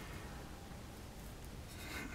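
Quiet outdoor background: a faint, steady hiss with no distinct sound.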